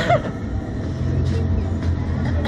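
A steady low mechanical drone, with a brief laugh just after the start.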